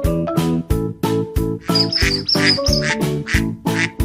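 Cheerful background music with a steady beat, and about two seconds in a short run of cartoon duck quacks laid over it as a sound effect.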